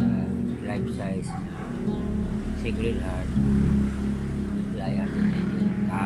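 A man's voice singing in long held notes, with strummed guitar music.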